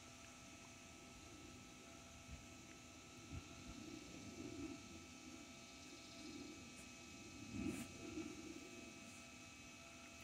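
Near silence: a faint steady background hiss, with a few very soft low sounds partway through and again near the end.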